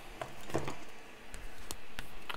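Paper being handled over a notebook: soft rustling with a few light clicks and taps.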